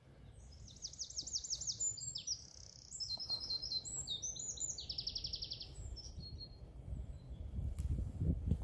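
A songbird singing one long, varied song of rapid high trills and chirps lasting about five seconds, over a low steady rumble.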